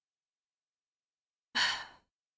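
A woman's short breathy sigh into a close microphone, about a second and a half in, after dead silence.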